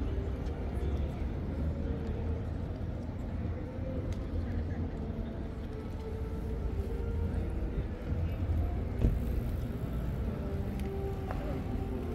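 Open city-square ambience: a steady low rumble of distant road traffic with faint voices of passers-by, and a single sharp knock about nine seconds in.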